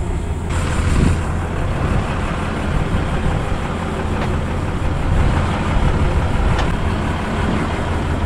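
An engine idling steadily, a low even hum, with a couple of faint clicks partway through.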